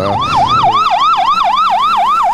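Ambulance siren in a fast yelp, its pitch rising and falling about four times a second.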